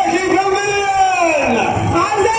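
A person's long drawn-out vocal whoop, rising and then falling in pitch over nearly two seconds, with other voices behind it.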